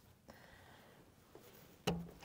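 Faint handling of a plastic wiring-harness connector by gloved hands, then one sharp click just before the end as the connector is worked loose.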